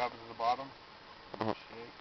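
Brief fragments of a person's voice, three short bursts, with faint hiss between them.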